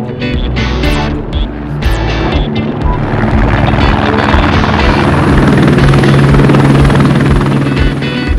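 Background music with guitar, joined about three seconds in by the noise of a low-flying police helicopter, which swells up and holds loud and steady over the music, with a steady low hum under it.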